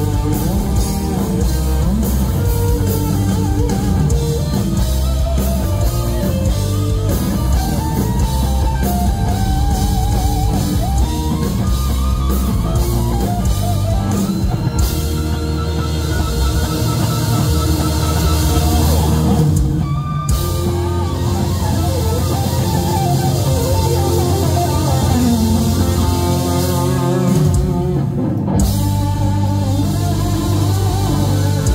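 Live heavy rock band: a Flying V electric guitar through Marshall amps plays a lead with bends and vibrato, over bass and drum kit. The band drops out for brief breaks about two-thirds of the way in and again near the end.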